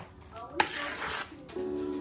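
A small metal spoon stirring and scraping potato salad in a plastic mixing bowl, with a couple of sharp clicks of the spoon against the bowl. Music comes in near the end.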